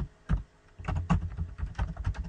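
Computer keyboard being typed on: a couple of separate keystrokes, then a quick run of keystrokes from about a second in.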